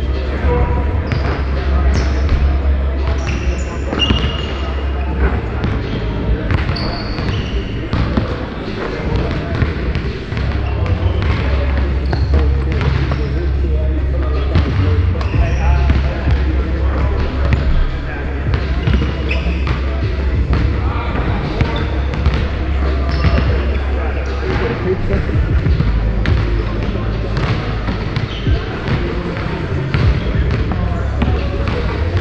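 Basketballs bouncing on a hardwood gym floor, many separate bounces, echoing in a large gym, with a few brief high sneaker squeaks and indistinct voices over a steady low rumble.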